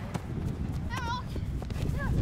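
A brief high-pitched shout from a young voice about a second in, over a low rumble of wind on the microphone and a few soft knocks.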